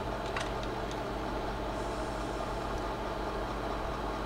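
Slide projector running with a steady fan hum, with a couple of light clicks just after the start as it changes slides.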